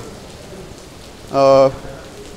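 Steady hiss of heavy rain, with a man's short spoken syllable about one and a half seconds in.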